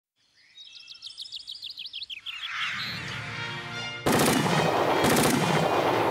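Title music for a TV show's opening: a run of quick high chirps swells into a loud, full sound about four seconds in, punctuated by sharp gunshot-like cracks.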